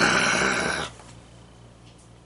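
A man's heavy, exasperated sigh: one breathy exhale lasting just under a second. It is followed by quiet room tone with a faint steady low hum.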